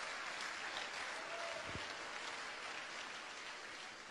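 Faint applause from a seated congregation, fading gradually.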